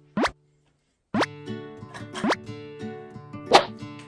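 Cartoon-style pop sound effects, each a short upward swoop in pitch, about a fifth of a second in and again just after a second, separated by dead silence. The second one comes in with a cheerful background music track, and sharper pops follow, the loudest near the end.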